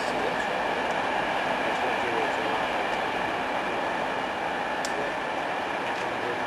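Wagons of a loaded aggregates freight train rolling past and away on the track: a steady rumble of wheels on rail with a faint ringing tone and a few light clicks.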